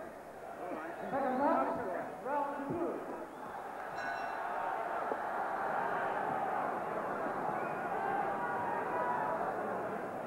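Boxing arena crowd: a hubbub of many voices and shouts, with scattered voices early on, then steady loud crowd noise from about four seconds in. A brief ringing tone sounds at that point.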